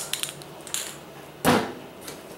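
Metal spray paint cans handled and set down on a hard floor: a few light clicks, then one sharp knock about one and a half seconds in.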